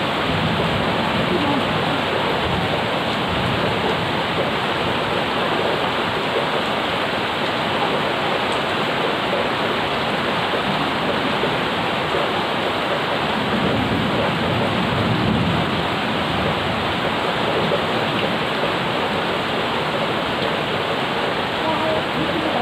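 Rain falling steadily, a dense even hiss of water on plants and paving, with a low rumble swelling briefly about two-thirds of the way through.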